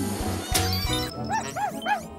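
A cartoon dog's voice yipping three short times near the end, over background music, with a sharp hit about half a second in.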